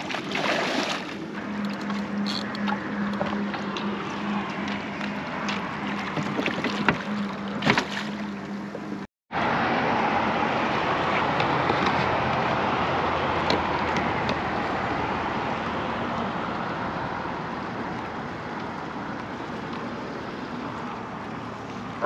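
Water slapping and sloshing around a small boat, with a few splashes near the start and a steady low hum running under it for several seconds. After a break about nine seconds in, a steady rush of wind and water on the microphone that slowly fades.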